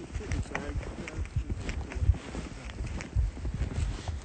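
Footsteps trudging through deep snow, with irregular dull thumps and rustling from the handheld phone, and brief muffled voices.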